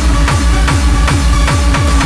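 Hardstyle dance track playing loud: a distorted kick drum on every beat, each kick falling in pitch, about two and a half a second, under held synth notes.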